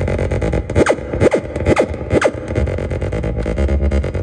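Arturia MicroBrute analogue synthesizer playing a repeating electronic pattern with a pulsing bass. About a second in, four quick falling pitch sweeps dive down through it, one after another.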